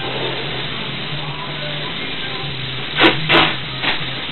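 Sharp clicks from a plastic snake transport box being handled: two about three seconds in and a third just before the end, over a steady hiss and low hum.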